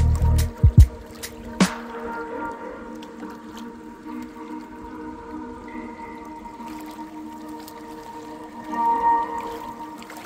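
Calm background music of long held notes over small lake waves lapping and splashing against shore rocks. A cluster of short knocks and low thumps in the first second or so is the loudest part.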